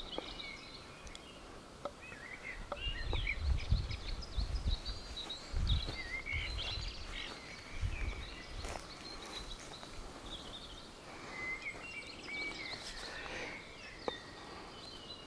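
Small birds chirping and singing on and off throughout, with bursts of low rumble on the microphone for a few seconds in the middle.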